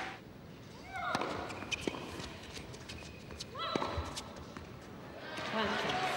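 A tennis rally in an indoor arena: sharp knocks of the ball on racket strings and court, with two short cries, then crowd applause starting near the end as the point is won.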